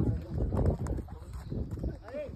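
Horses walking on stony dirt ground, their hooves knocking and scuffing irregularly.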